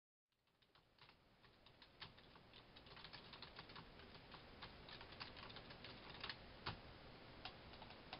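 Typing on a computer keyboard: quick, irregular keystroke clicks that fade in over the first two seconds and then carry on at an even level.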